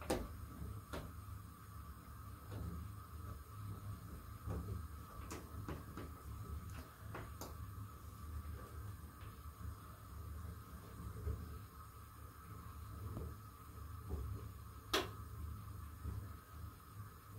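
Faint clicks from an Altus front-loading washing machine's controls as its program dial is turned and its panel buttons are pressed, a few scattered clicks with the sharpest near the end, over a low steady hum.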